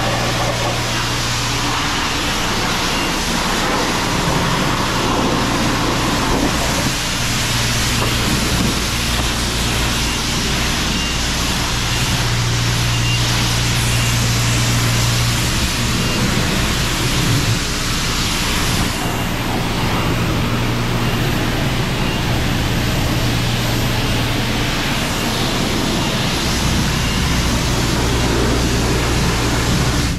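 High-pressure wand at a self-serve car wash spraying water onto a car's wheel and body: a loud, steady hiss of spray over a steady low hum. The spray cuts off right at the end.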